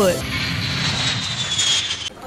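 Jet aircraft sound: a steady rushing noise with a high whine that slowly falls in pitch, stopping abruptly.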